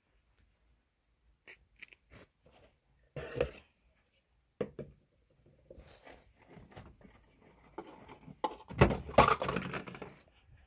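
Stacked clear plastic cups and containers being rummaged through on a shelf: scattered knocks and crinkles, growing busier and ending in a loud clatter near the end.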